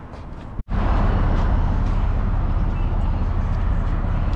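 Motorcycle engine idling with a steady, loud low rumble, coming in suddenly after a brief gap about two-thirds of a second in.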